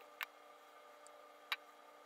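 Two light clicks of plastic parts knocking together as a disassembled Echo Dot's housing pieces are handled: one just after the start, one about a second and a half in. A faint steady hum lies underneath.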